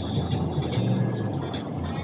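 Steady low hum of a car running, heard from inside the cabin.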